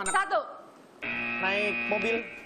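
Game-show countdown timer's electronic end-of-time buzzer: a steady, even tone that starts abruptly about a second in and holds to the end, signalling that the answer time has run out.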